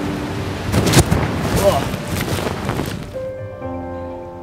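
Wind rushing loudly over the microphone during a wingsuit flight, with a sharp crack about a second in. Near the end it gives way to music with long held chords.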